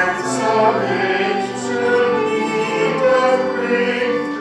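Voices singing a hymn in slow, held notes.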